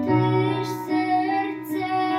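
A young girl singing a Polish Christmas lullaby carol solo, holding long notes over an instrumental accompaniment.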